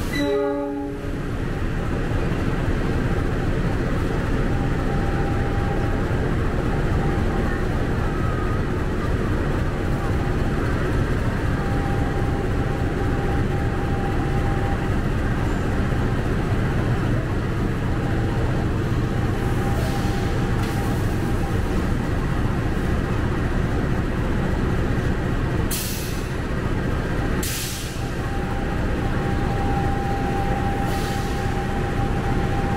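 Diesel-electric locomotive of the CC206 class running close by at low power: a steady low rumble as it is brought up to and coupled onto a passenger carriage. A brief pitched tone sounds in the first second, and short sharp hisses come near the end.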